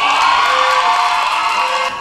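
Audience cheering and applauding, with one long held tone that rises and then holds over the clapping.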